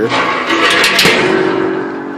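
Steel smoker door on its spring-loaded hinge being swung by its handle: metal scraping and several sharp clanks in the first second, then a lingering metallic ringing tone.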